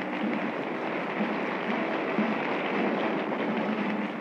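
Audience applause on an old, somewhat hissy recording: a dense, steady patter of clapping for an award winner coming up to the podium.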